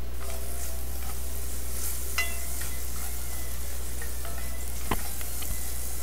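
Minced garlic frying in a little oil in a pot, sizzling steadily while a wooden spoon stirs it, with a sharp knock of the spoon about five seconds in.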